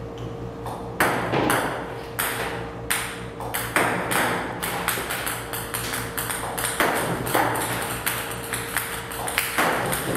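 Table tennis balls from a ball-launching robot clicking sharply on the table, a few irregular hits a second, with a faint steady hum underneath.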